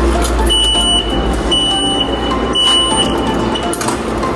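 Station ticket machine beeping: three high half-second beeps about a second apart, with a weaker fourth near the end, over a steady low rumble of station noise.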